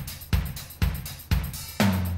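Rock song intro: a steady drum-kit beat, one hit about every half second with a heavy kick drum, and a low bass note coming in near the end.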